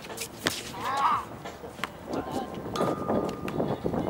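A basketball strikes with one sharp knock about half a second in, followed by a short wavering high-pitched sound and players' voices in the second half.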